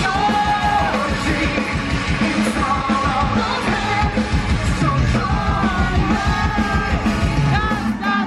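Metal band playing live in a concert hall, heard from the crowd. Dense, fast drumming runs under a sung vocal line, with some yelling.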